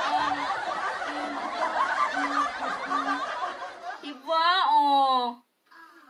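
A woman singing a long, wavering note about four seconds in. Before it comes a busy jumble of voices and laughter.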